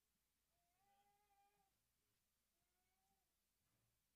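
Near silence: room tone, with two very faint, high, drawn-out cries. The first starts about half a second in and lasts about a second; the second, shorter one comes a little before the three-second mark.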